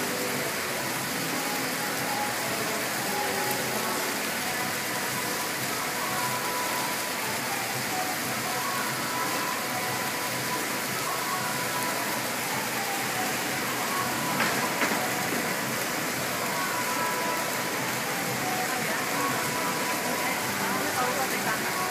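A steady outdoor hiss of background noise, even across high and low pitches, with faint snatches of distant voices or tones drifting through it.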